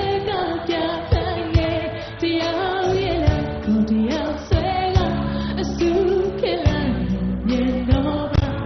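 A woman singing a Burmese pop song live with a band, her melody held and bent over sustained low notes and repeated drum hits.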